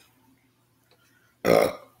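A woman burps once, a short, loud belch about one and a half seconds in.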